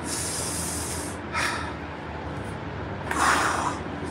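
A man breathing audibly to calm himself: a long hiss of breath, then two short breaths, about a second and a half in and near the end.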